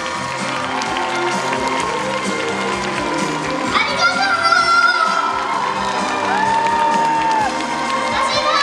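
Live pop music played over a concert PA, with a woman singing into a handheld microphone and an audience cheering along.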